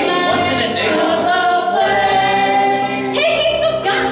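A group of teenage voices singing together as a choir, holding long notes.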